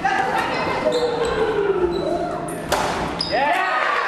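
Youth basketball game in an echoing gym: the ball bouncing and knocking, with wordless shouts and calls from players and spectators throughout. One sharp knock stands out a little under three seconds in.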